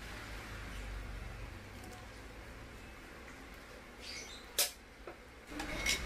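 Quiet kitchen background: a faint steady hiss with a low hum, and one sharp clink of kitchenware about four and a half seconds in.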